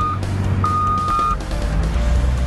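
A wheel loader's reversing alarm beeping, with long steady beeps about a second apart, over the low steady drone of its diesel engine.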